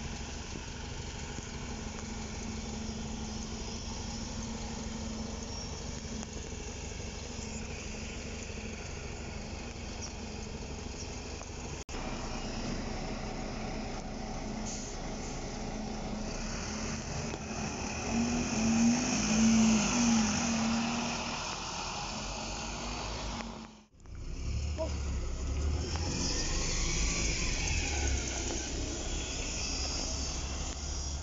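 Diesel buses running close by in three short clips: a double-decker bus's engine idling steadily, then a single-decker bus moving slowly past with its engine growing louder for a few seconds around the middle, then a double-decker bus pulling away.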